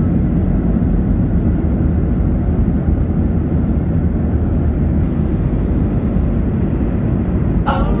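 Steady low rumble of airliner cabin noise in flight. Music comes in near the end.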